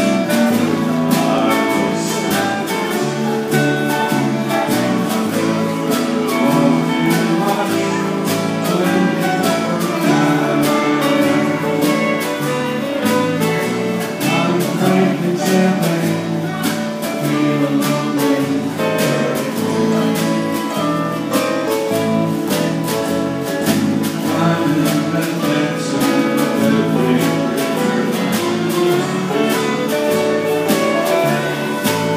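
A live country band playing, with strummed acoustic guitars, electric guitar, bass guitar and fiddle over a steady beat.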